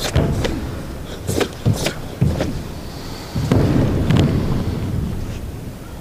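A karateka's bare feet stamping and landing on a raised competition platform during a Shotokan kata: a string of sharp knocks and low thuds, a few in the first half and a longer rumbling run of them around the middle.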